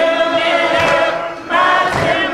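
Church congregation singing an old-school gospel song together, a man's voice leading, with held notes and a short break about one and a half seconds in. Hand claps land about once a second.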